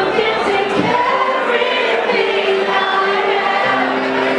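A woman singing live into a microphone over backing music, holding long sustained notes, with a lower note taken near the end.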